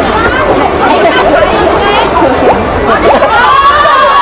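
Crowd of people chattering, many voices talking over one another, with several higher voices rising together near the end.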